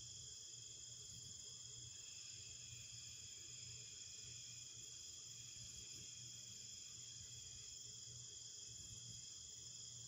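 Chorus of crickets chirping steadily at several high pitches, faint, with a low steady hum beneath.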